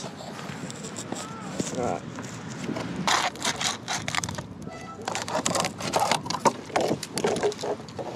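Scissors cutting through a plastic drink bottle: a run of crackling snips and plastic crinkles, starting about three seconds in.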